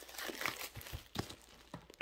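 Paper and packaging crinkling and rustling as a mail package is handled and opened, with a few short, sharp crackles.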